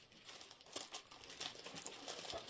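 Faint paper and card rustling and crinkling as pieces of paper ephemera are handled, a run of short, irregular rustles.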